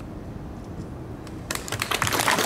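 Low outdoor background rumble, then about one and a half seconds in scattered hand claps from the audience begin: the first claps of applause as the performance ends.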